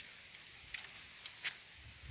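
Faint outdoor ambience in a wooded garden: a steady, soft high hiss with a few short clicks in the middle.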